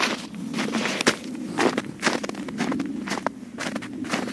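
A runner's footsteps in running shoes on snow, about two footfalls a second.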